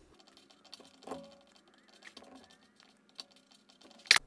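Faint, rapid clicking of a computer mouse and keyboard, sped up along with the screen recording.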